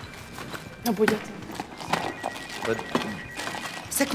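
Rummaging through a handbag: items clicking and knocking together, broken by short wordless vocal sounds from a woman.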